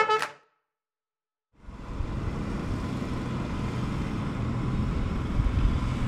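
A trumpet tune ends in the first half-second, then about a second of silence, then a steady low rumble of outdoor background noise.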